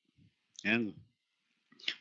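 Speech only: a man's voice says one short word in a pause of the talk, then starts speaking again right at the end.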